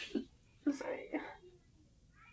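A tearful woman's breathy, half-whispered vocal sounds, short and broken, about a second long and fading to quiet room tone.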